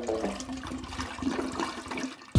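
A toilet flushing: a steady rush of water.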